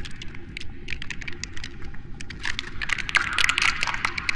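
Sound-effect track of an animated logo intro: a dense, irregular run of sharp clicks and crackles over a low steady rumble, growing louder and brighter in the last second and a half.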